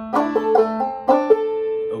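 Gold Tone five-string banjo played clawhammer style in sawmill tuning: a short phrase of plucked notes, several quick ones in the first second, then two more and a held note ringing on.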